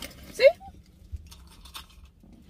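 A woman says one short word, then faint scattered clicks and rustles of handling follow, over a low steady rumble inside a car.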